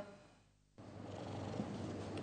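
A brief dead silence, then from about a second in the cheetah cubs purring steadily.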